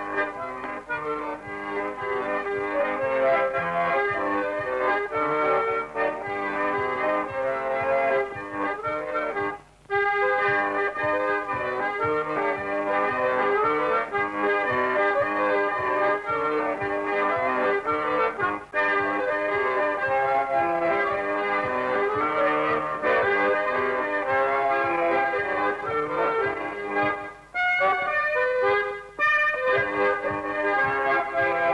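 Hohner piano accordion playing a Scottish folk tune, melody over held chords, with a brief break just before ten seconds in.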